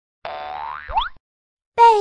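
A cartoon sound effect of the boing kind, starting about a quarter second in and lasting under a second: its pitch wavers upward and ends in a quick rising swoop. Just before the end, a cartoon voice starts to announce the title jingle.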